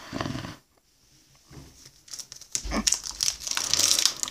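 Crinkly plastic trading-card pack wrapper being handled: a brief rustle at the start, a pause, then dense crinkling and crackling from about two and a half seconds in, with a low bump against the table near that point.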